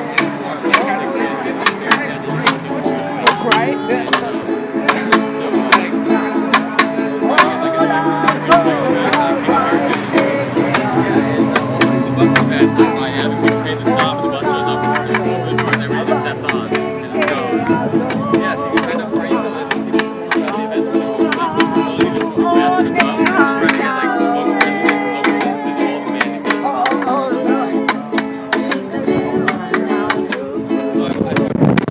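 Informal acoustic jam: a small strummed string instrument, ukulele-like, played in a steady rhythm while several people sing along.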